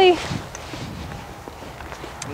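A person's footsteps on the soft dirt footing of a riding arena, faint and uneven, after a woman's voice trails off at the start.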